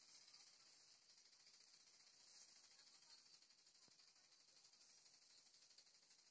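Near silence with a faint steady high hiss.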